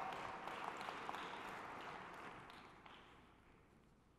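Faint audience applause dying away over about three seconds.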